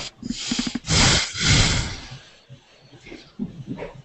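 A person breathing out loudly close to a microphone: a short breathy voiced sound, then an airy exhale lasting about a second, followed by softer breath noises.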